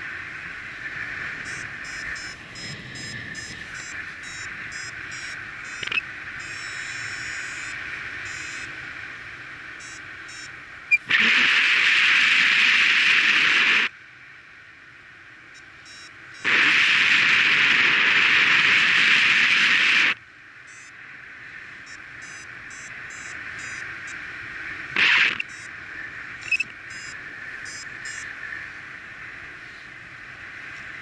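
Wind rushing over the microphone in flight under a paraglider, with two loud gusts of several seconds each, the first about eleven seconds in and the second about five seconds later. Through the quieter stretches a flight variometer beeps in quick repeated pips, signalling lift as the glider climbs.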